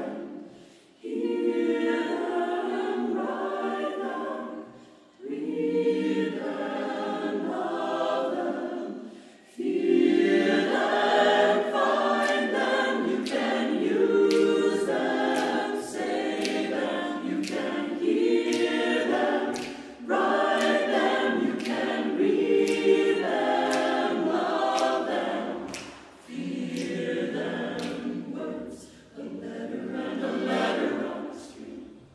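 Mixed choir singing a cappella, in phrases broken by brief pauses.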